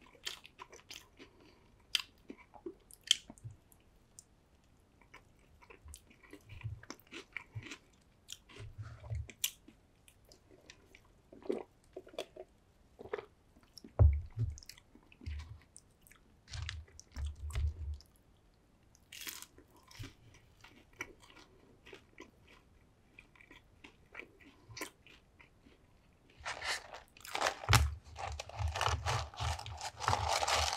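Close-miked eating sounds: chewing and biting on a cheeseburger and chicken nuggets, heard as scattered short clicks and soft thumps. Near the end, a paper fries carton rustles densely as fries are tipped out onto a wooden board.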